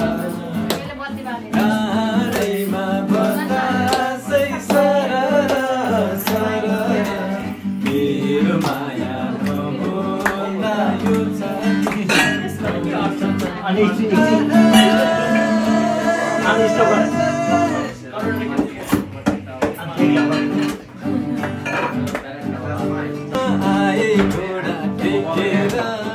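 Acoustic guitar strummed while a group of people sing along together.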